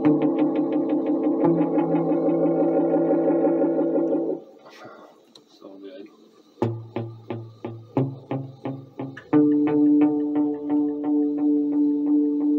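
Electric guitar played through an Elk EM-4 tape echo: sustained chords carried on an even pulse of echo repeats, about four a second. They stop about four seconds in, and after a short quiet spell single plucked notes each trail off in repeats before full chords come back near the end.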